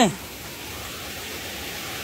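Shallow stream water running over rocks, a steady, even rushing hiss.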